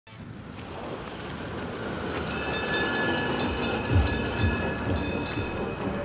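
Vehicle traffic: a vehicle rumbling past, fading in over the first two seconds, with a steady high-pitched squeal from about two seconds in and a few low thumps near the middle.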